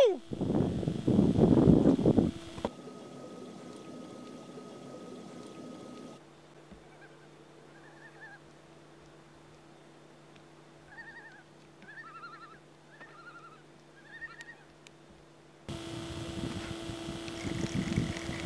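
Water splashing, loud for the first couple of seconds, as a big northern pike is released over the side of the boat, then a cut to quiet lakeside ambience with a faint steady hum. In the second half, distant birds give several clusters of short calls.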